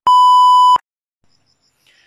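A single steady, high test-tone beep of the kind played over TV colour bars, lasting under a second and cutting off suddenly.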